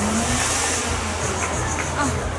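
Burning stunt car driving forward just after a pyrotechnic blast: its engine runs under a steady noise from the flames, with a high hiss in the first second.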